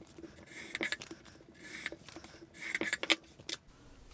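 Folded sheets of printer paper rustling and sliding against each other as they are handled, in a few short spells with light taps.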